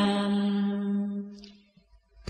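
A single voice holding one long chanted note at the end of a Vietnamese recited verse line (ngâm), steady in pitch and fading out about a second and a half in.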